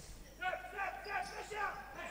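Faint voices of players calling out on an indoor futsal court, in a short break in the commentary.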